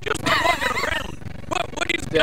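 A monster's roar sound effect for Doomsday, with a wavering pitch. A second roar begins near the end.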